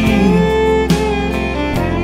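Country band playing an instrumental fill between sung lines: fiddle and guitar over steady bass, with a couple of drum hits.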